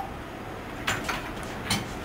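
A loaded barbell being lifted off squat stands and walked out: a few brief, faint knocks and clinks of bar and plates over low room noise.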